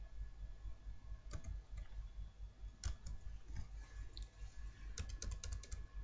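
Computer keyboard keystrokes: a few scattered single taps, then a quick run of about seven taps near the end as a mistyped word is deleted, over a faint steady low hum.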